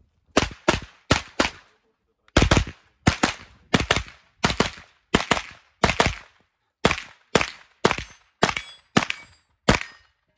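A 9mm Inter Ordnance M215 carbine fitted with a compensator fires about twenty rapid shots, mostly as quick pairs with short pauses between them. Each report has a brief echoing tail.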